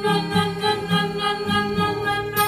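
Acoustic guitar strummed in a steady rhythm while a voice holds one long, steady sung note over it.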